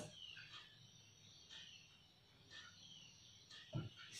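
Near silence, with a few faint, short, high bird chirps scattered through it.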